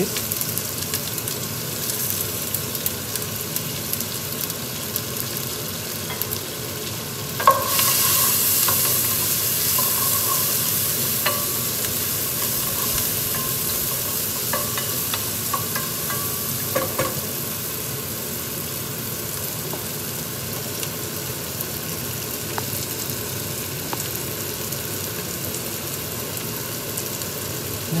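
Onion and curry leaves frying in hot oil in a steel pot, sizzling steadily as a wooden spoon stirs them, with occasional light knocks of the spoon on the pot. About seven seconds in the sizzling jumps suddenly louder, then slowly eases.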